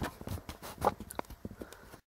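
Camera being handled up close: a string of irregular light knocks and clicks as it is adjusted.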